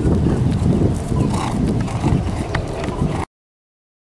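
Hoofbeats of a cantering horse on turf, over a heavy low rumble. The sound cuts off abruptly to dead silence a little past three seconds in.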